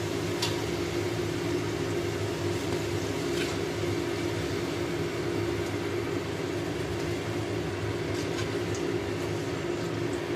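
Steady mechanical hum of a kitchen extractor fan running over the stove, with a few faint short clicks.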